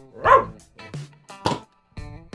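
Dog barking at a Nerf blaster held close to its face: a few short barks, with a sharp click about a second and a half in.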